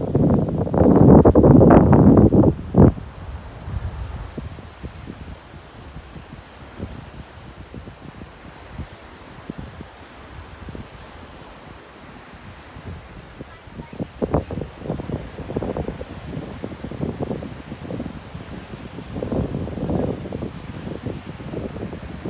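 Wind gusting over the microphone, loudest in the first three seconds and returning in weaker gusts later, over a steady wash of surf breaking on a rocky shore.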